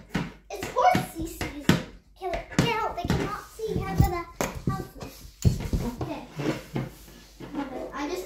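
Plastic toy horse hopped along a wooden floor, its hooves clacking in a run of quick, irregular knocks, with a child's voice in between.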